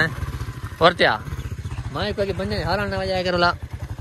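A small commuter motorcycle's engine running with a low, steady chug. A man's voice calls out loudly over it twice: briefly about a second in, then in a longer drawn-out call.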